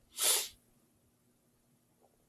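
One short, breathy intake of air by the reader close to the microphone, lasting under half a second just after the start.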